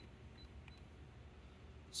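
Near silence with faint clicks of keys being pressed on an Okuma CNC control panel's keyboard, one of them showing about two-thirds of a second in.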